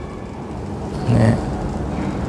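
A steady low rumble of background noise fills a pause in speech. About a second in there is a brief, low voiced hum.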